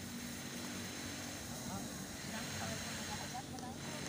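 A steady low engine drone, with faint chatter of voices over it from about halfway through.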